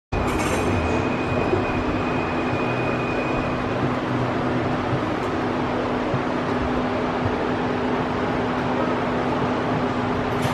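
Life Fitness PowerMill stair climber running: a steady mechanical hum and rumble from its motor and revolving steps under a climber, with a constant low tone throughout and a faint high whine over the first few seconds.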